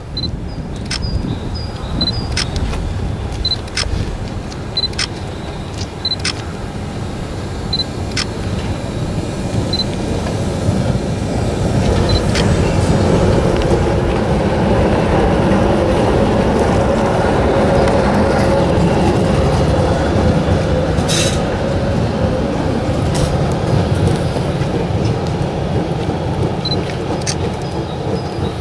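Düwag GT8 articulated tram approaching and passing close by, its wheels and running gear rumbling on the rails. The sound grows louder and holds a steady hum while the cars go past, from about halfway through, then eases off near the end.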